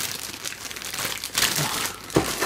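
Clear plastic parts bags holding model-truck wheels crinkling as they are handled, irregular and a little louder near the end.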